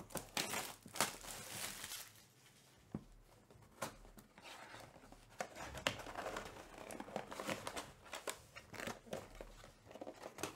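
Packaging of a Topps Chrome Black card box crinkling and tearing as the box is unwrapped and opened, with light clicks and knocks of the cardboard being handled. The crinkling is loudest in the first two seconds and comes again in a second stretch in the second half.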